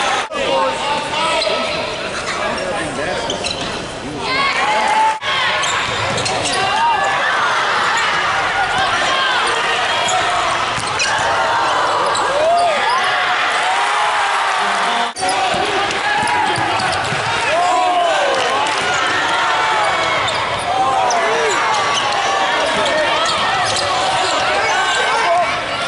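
Basketball game sound on a hardwood court: the ball dribbling and sneakers squeaking in short rising-and-falling chirps, with players and spectators calling out.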